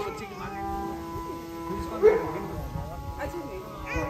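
Harmonium holding a steady chord, with a baby whimpering and people talking over it. The loudest moment is a short vocal outburst about two seconds in.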